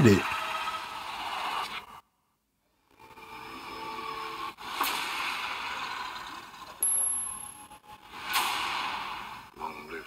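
Movie trailer sound effects: swelling whooshes that build and fade, with a full second of dead silence about two seconds in and sudden hits at about five and eight seconds. A thin high tone sounds briefly around seven seconds.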